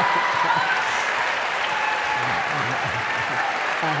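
Large audience applauding and laughing after a joke. The clapping is loudest at the start and eases a little after the first second.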